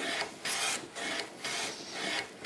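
Hand plane taking short, quick strokes along the edge of a wooden board, each stroke a rasping hiss of the blade cutting a shaving, about two strokes a second.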